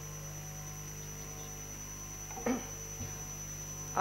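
Steady electrical mains hum with a thin high whine above it, and a short faint sound about two and a half seconds in.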